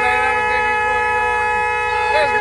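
A loud, steady horn-like tone held without a break, with a lower sound wavering up and down beneath it.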